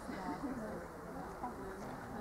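A flying insect, such as a fly or bee, buzzing close to the microphone, its pitch wavering up and down as it moves.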